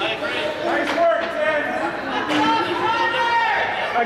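Several people talking at once in an ice rink: overlapping chatter with no single clear voice.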